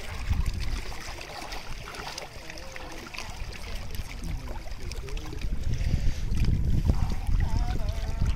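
Lake water lapping against shoreline boulders and sloshing around a person's legs as he wades into the shallows, over a low, uneven rumble that grows louder in the second half.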